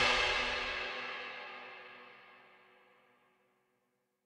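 The final orchestral chord of the song's backing track ringing out and dying away, fading out over about two seconds.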